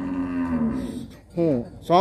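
A cow mooing once: a single call lasting about a second, falling slightly in pitch toward its end.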